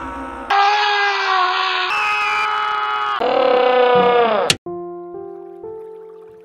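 TV programme sound cutting abruptly from one snippet of music and sound to the next every second or so, as if channels are being switched, with one snippet sliding down in pitch. A sharp click comes about four and a half seconds in, then a simple tune of single steady notes.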